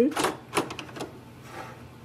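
Black ink cartridge being set into the carriage slot of an HP Envy 6155e inkjet printer: several light plastic clicks and knocks in the first second or so.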